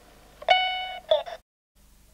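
Ross talking alarm clock: one electronic chime tone that fades over about half a second, followed by a brief burst of its synthetic voice that cuts off suddenly.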